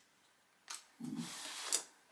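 A click, then about a second of rustling and scraping from small paint jars and brushes being handled on a worktable, ending in a sharp tap.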